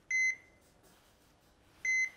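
Hospital heart monitor beeping: two short beeps at one high pitch, one just after the start and one near the end, about a second and three-quarters apart.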